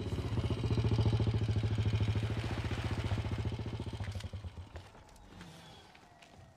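Motorcycle engine chugging with a rapid, even pulse as it rides up and slows, fading away about four to five seconds in.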